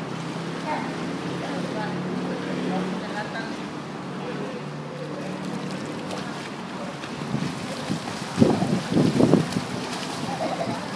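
Swimming-pool water splashing as swimmers kick and paddle, with a burst of loud splashes about eight and a half to nine and a half seconds in. Underneath runs a steady low hum, with wind on the microphone.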